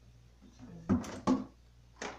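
A kitchen spatula being fetched among other utensils: two short knocks close together about a second in.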